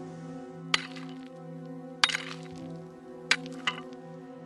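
Steady background music with three sharp cracks about a second and a quarter apart and a smaller click near the end: the sound of digging in stony ground, with stone knocking on stone.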